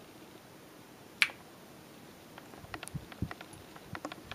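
A single sharp click about a second in, followed by a scatter of faint clicks and two soft low knocks, against quiet room tone.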